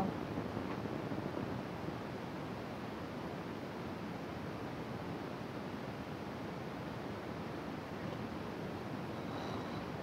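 Faint steady outdoor noise, an even hiss of wind and wind on the microphone, with no distinct event standing out.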